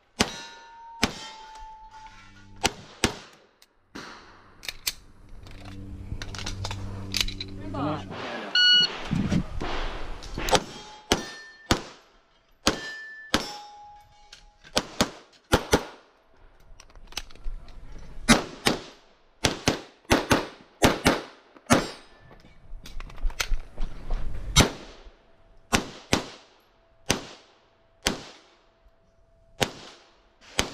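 Grand Power X-Caliber pistol fired in quick pairs and short strings, with pauses between groups while the shooter moves between positions. Some shots are followed by a brief metallic ring from steel targets being hit.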